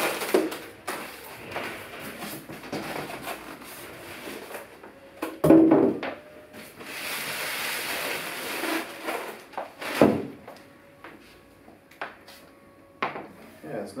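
Handling noise of unpacking a floorstanding speaker: polystyrene foam packing and a plastic bag scraping and rustling as they are pulled off, with a heavy thump about five and a half seconds in and another about ten seconds in.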